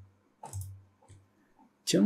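A few short computer mouse clicks, spaced apart in a quiet stretch, as a dialog is opened in the 3D program. A voice starts near the end.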